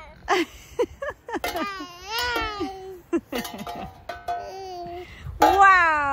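A toddler babbling and squealing in a high, wordless voice, with a few sharp clinks from the metal bowls he is holding.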